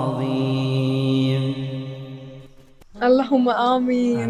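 A man's voice reciting the Quran in Arabic. The last word of the verse is held as one long, steady note, which fades out about two and a half seconds in.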